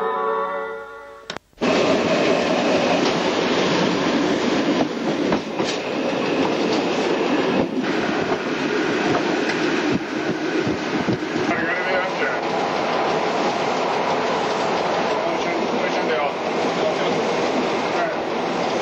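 Sangritana's ALe 09 Stanga-Tibb electric railcar running along the line: a steady rumble of wheels on rails with a few irregular sharp clicks over the joints. It starts about a second and a half in, once a short tail of music has faded out.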